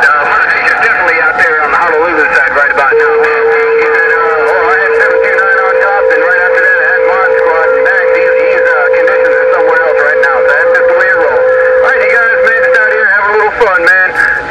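Received CB traffic from the speaker of a Uniden HR2510 transceiver on 27.085 MHz: thin, distorted voices talking over one another. A steady whistling tone is held over them from about three seconds in until about a second before the end.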